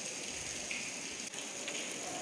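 Steady, even background hiss with a faint thin high whine, without clear events.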